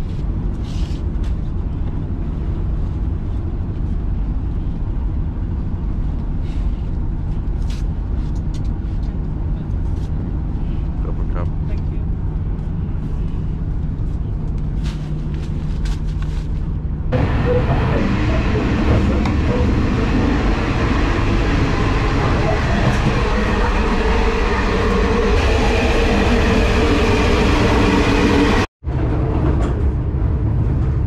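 Inside a sleeper train carriage: a steady low rumble with light clicks and rattles. After a cut about halfway through, the train's running noise turns louder and fuller. It cuts out briefly near the end.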